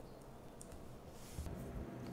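Faint light clicks and a brief soft papery rustle about a second in, from hands pressing plastic page flags onto a book's pages and handling a sticky-note pad.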